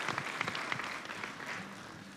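Congregation applauding, the clapping gradually fading away.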